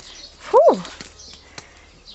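A woman's short voiced sigh, "фу", rising then falling in pitch, followed by quiet with a faint low hum.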